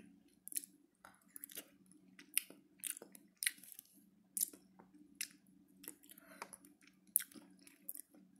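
A person chewing a mouthful of boiled egg close to the microphone, with wet mouth smacks coming unevenly about one and a half times a second, over a steady low hum.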